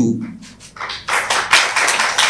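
Brief applause: many hands clapping in an irregular patter, starting about a second in.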